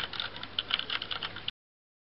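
Typing sound effect: a quick run of keyboard key clicks that stops abruptly about one and a half seconds in, followed by dead silence.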